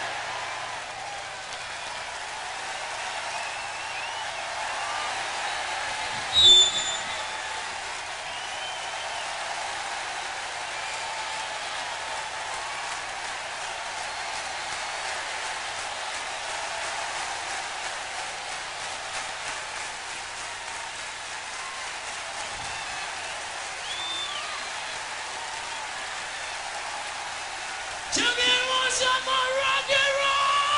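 Rock concert audience clapping and cheering between songs, a steady wash of applause with scattered shouts and one short, loud, shrill whistle about six and a half seconds in.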